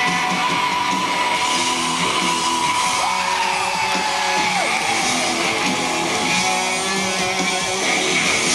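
Live rock band playing: strummed electric guitars over drums, with a long held high note that dips in pitch about three seconds in and again a little later.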